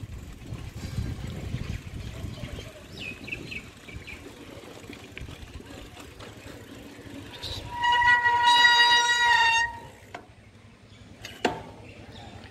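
A horn sounding once: a steady, high note held for about two seconds, beginning a little past the middle. It sits over a low rumble of wind and riding noise on the microphone, and a single sharp knock comes near the end.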